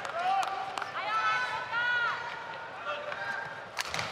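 Badminton rally: rackets striking the shuttlecock in a few sharp clicks, with short high squeaks from players' shoes on the court about a second in.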